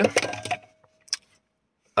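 A single short, sharp click about a second in as a plastic hair straightener is picked up and handled.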